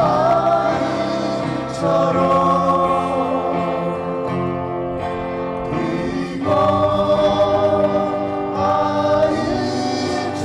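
Two women singing a Korean folk song together over two strummed acoustic guitars, through microphones; a new, louder phrase begins about six and a half seconds in.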